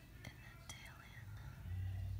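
Faint whispering with two light clicks in the first second, over a steady low hum that grows louder near the end.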